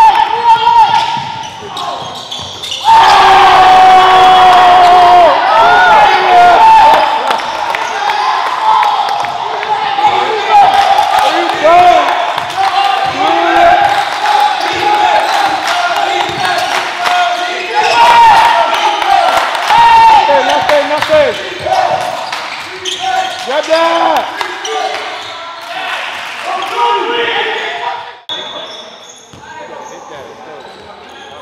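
A basketball being dribbled on a gym's wooden floor during a game, with sneakers squeaking on the court and players' voices in the hall.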